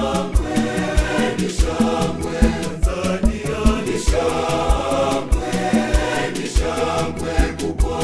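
Mixed choir singing an upbeat gospel song over a band, with a steady bass-drum beat about twice a second.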